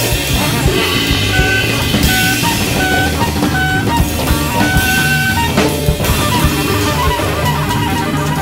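Jazz group playing: drum kit and electric bass, with a short high note repeated about five times in the first half over synthesizer and sampled textures.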